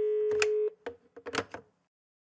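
Electronic sound effects of a TV channel intro: a steady, phone-like electronic tone cuts off abruptly under a second in, followed by a few sharp crackling glitch clicks.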